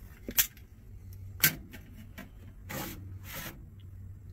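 Hot-swap drive caddies being worked in a metal server chassis: two sharp latch clicks, then two longer sliding scrapes as a caddy is drawn along its bay, over a steady low hum.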